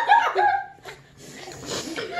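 A young child laughing, the laughter dying away within the first second.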